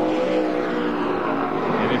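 NASCAR stock car V8 engines running on track, a steady drone made of several even engine tones.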